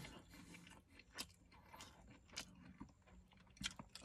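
A person chewing a large mouthful of Big Mac with the mouth closed. It is faint, near silence, with a few soft wet clicks and smacks scattered through it.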